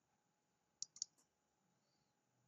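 Computer mouse clicking, three or four quick clicks about a second in, against near silence.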